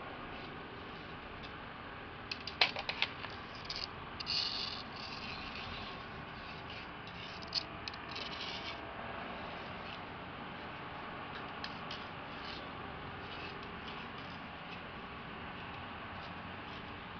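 A thin stick scraping and clicking on concrete pavement as a cat paws at it: a cluster of sharp clicks about two and a half seconds in, then short scratchy scrapes around four seconds and again around seven to eight seconds, over a steady faint outdoor hiss.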